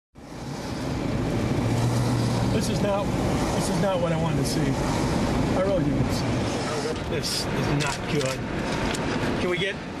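Indistinct voices over a steady, dense background noise, fading in over the first second.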